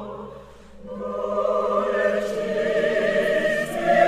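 Classical vocal music: sustained sung voices with vibrato over an orchestra. The sound dips briefly about half a second in, then swells and grows louder toward the end.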